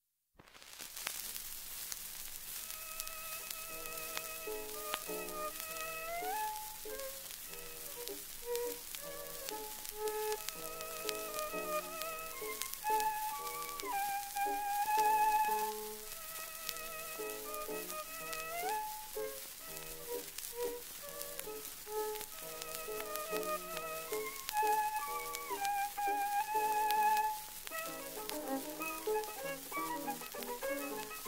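1921 acoustic-era 78 rpm shellac record playing a waltz for violin solo with piano accompaniment, under steady surface hiss and crackle. The violin carries a vibrato melody with sliding notes over piano chords, starting about half a second in.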